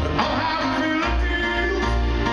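Live piano music with a male voice singing over it, sustained chords and bass notes ringing.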